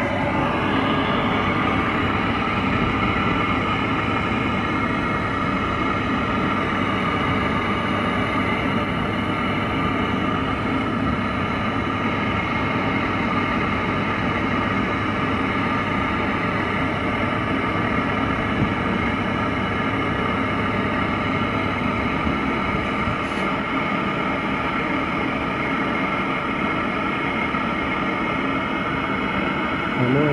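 Gas brazing torch burning steadily with a constant hiss against a copper refrigerant pipe at an air-conditioner compressor's stub. The flame is heating the brazed joint to free the pipe from the dead compressor.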